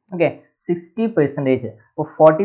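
A man speaking in Malayalam, in a steady lecturing voice.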